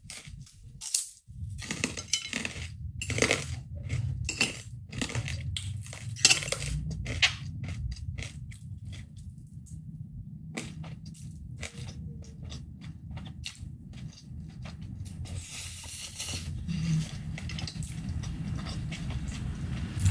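Close-up crunching of a dense white kerupuk cracker being bitten and chewed: rapid sharp crackles for the first several seconds. They thin out to occasional softer eating sounds in the second half.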